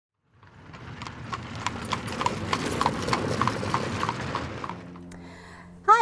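Horse hooves clip-clopping on a hard surface in an even rhythm of about three strikes a second. They fade in from silence and fade out about a second before the end.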